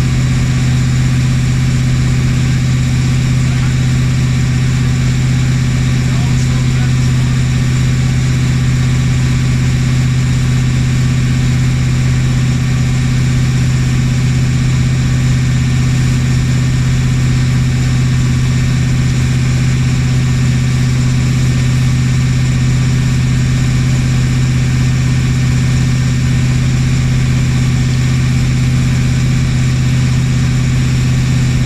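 Lobster boat's engine running steadily underway, a constant low hum that does not change in pitch or level.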